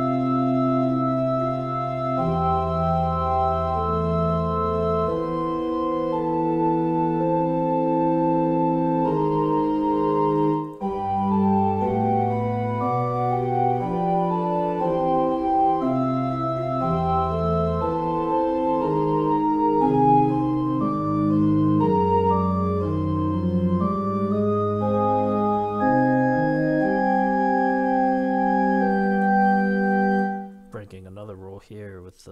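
Notation-software pipe-organ playback of a passage from a four-voice fugue, with sustained organ notes moving in counterpoint. There is a brief break about eleven seconds in.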